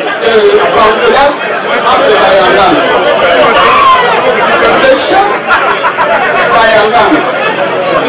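A woman speaking into a microphone over a PA system, with the chatter of a seated crowd under it.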